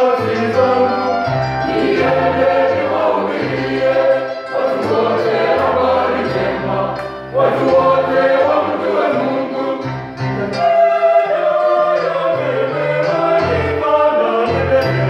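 Church choir singing a gospel song in parts, men's voices to the fore, with brief dips between phrases.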